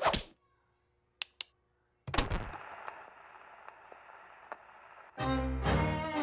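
A thunk about two seconds in, then the hiss and crackle of a vinyl record playing, before string-led dance music starts about five seconds in.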